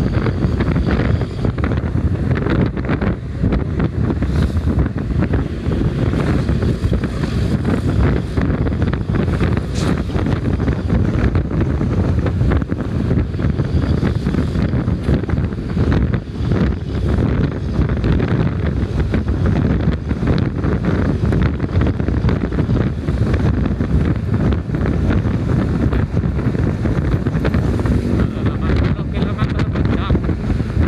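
Wind rushing over the microphone of a motorcycle riding at speed, a steady loud rumble with engine and road noise underneath.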